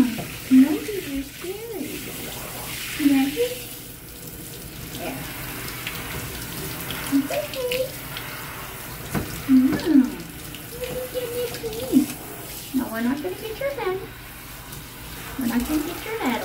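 Handheld shower head spraying water over a dog's coat in a bathtub, a steady rushing hiss. Short sounds of a voice come and go over the spray.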